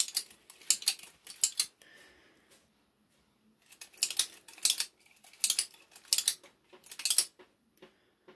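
Metal finger blades and fingertip pieces of a Freddy Krueger glove clinking and scraping against each other as the gloved hand flexes and turns. There is a run of sharp clinks in the first second and a half, a lull, and another run from about four to seven seconds in.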